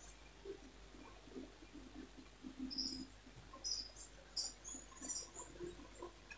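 Faint scratching and rustling as a long wooden ruler is handled and laid across cotton fabric on a table, with a few short scratches from about two and a half seconds in.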